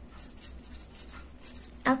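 Felt-tip marker scratching on paper in a series of short, faint strokes as it writes a word by hand.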